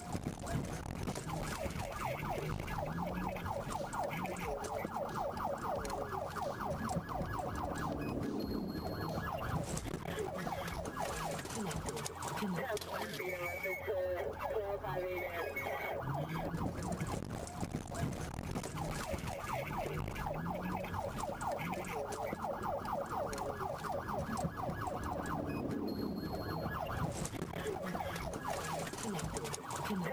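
Police siren sounding continuously, its pitch rising and falling, over road and vehicle noise.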